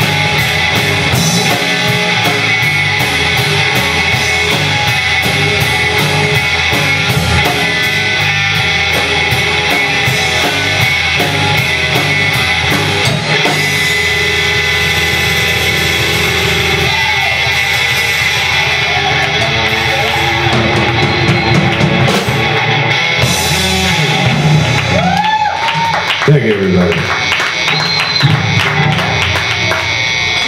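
Live rock band playing loud: electric guitar, bass guitar and drum kit, with the cymbal strokes thinning out about halfway through.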